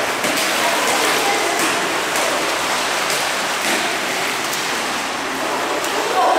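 Water splashing from a swimmer's breaststroke strokes in an indoor pool, a steady rushing noise with small splashes every second or so.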